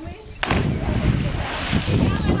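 Two people jumping feet-first into water together: a sudden loud splash about half a second in, then a long hiss of falling spray and churning water.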